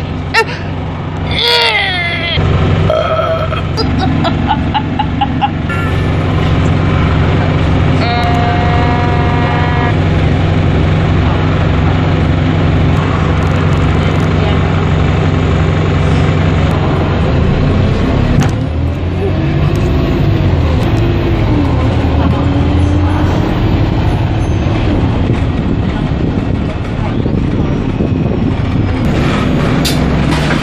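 Bus engine and running noise heard from inside the passenger cabin, a steady drone whose pitch rises and falls several times in the second half as the bus speeds up and slows. About eight seconds in a held two-second tone sounds over it, and there is a short laugh early on.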